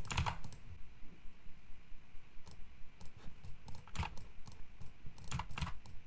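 Typing on a computer keyboard: a fast, even run of keystrokes, with a few louder clicks about four seconds in and near the end.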